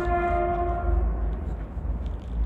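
A horn sounding once, a single steady tone of fixed pitch that cuts off about a second in, over a low steady rumble.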